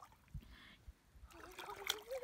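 Faint splashing and trickling of lake water stirred by a person wading in up to the waist, with a short sharp splash near the end.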